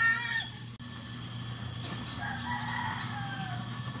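Gamecocks crowing. One loud crow ends in the first second, and a fainter, slightly falling crow follows about two to three seconds in.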